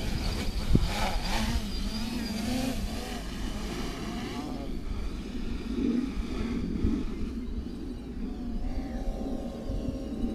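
Quadcopter's electric motors and propellers whining, the pitch rising and falling with the throttle, growing fainter after about four seconds as it climbs away. A low rumble of wind on the microphone runs underneath.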